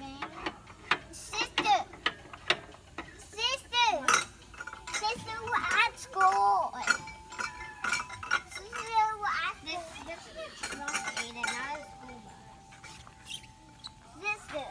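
Children playing on a playground, calling out and shrieking in short bursts, with many sharp clicks and clinks among them.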